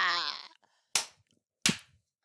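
A sung voice glides down and fades out in the first half-second. Then come two sharp, single snaps from the hands, about two-thirds of a second apart, with silence between them.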